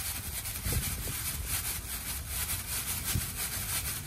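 Plastic bag crinkling and rustling as hands grip and twist a truck's plastic cartridge oil filter housing loose inside it: a dense, continuous run of small crackles.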